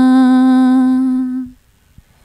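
A woman's unaccompanied voice holding one long, steady low note, the closing note of an Acehnese 'ayon aneuk' lullaby chant, which stops about a second and a half in.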